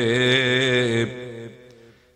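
A man's voice chanting one long held note, the drawn-out end of the invocation "O Nabiye" (O Prophet), in the melodic style of a Malayalam religious talk. It breaks off about a second in and fades away.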